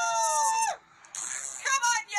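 Two people shouting a long, high, held cheer that falls in pitch and cuts off just under a second in, followed by shorter shouts.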